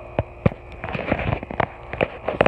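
Handling noise on a phone's microphone: a scatter of sharp clicks and knocks with rubbing and rustling as the phone is moved in the hand.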